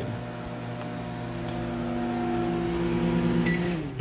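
Microwave oven running with a steady electrical hum. Near the end a short keypad beep sounds as it is stopped, and the hum winds down in pitch and stops.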